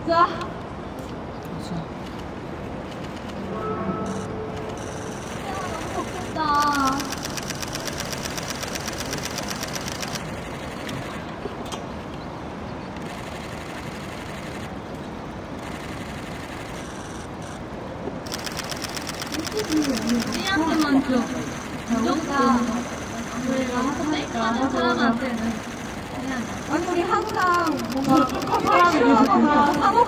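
Crowd of fans talking and calling out, growing louder and denser from about twenty seconds in. A thin, high-pitched buzzing comes and goes twice under the voices.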